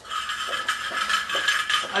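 Drill running with an empty tuna can over its bit: a steady whine with metal rattling and a few clinks from the can.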